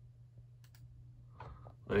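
A quick computer mouse click about two-thirds of a second in, pressing Remove to delete the selected saved passwords, over a faint steady low hum.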